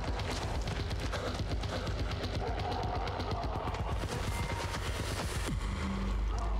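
Dense, rapid crackling and rattling over a steady deep rumble, a dramatic sound effect from the TV series soundtrack.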